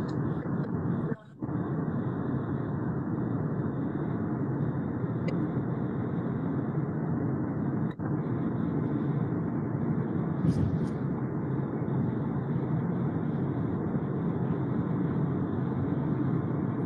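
Steady car-cabin road and engine noise from a moving car, coming through a phone's live-stream audio, muffled, with a short dropout about a second in.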